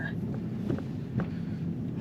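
Steady low road and wind noise of a Tesla electric car driving slowly, with no engine note, and a few faint clicks.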